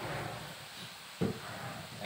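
Faint simmering of curry in a wok, with one short low sound a little past the middle.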